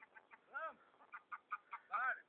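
Domestic white geese calling in a string of short honks, with two longer, louder calls about half a second in and near the end.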